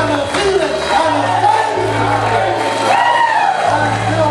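Live worship band playing, with long held bass notes and drum hits, while a congregation sings and calls out over the music.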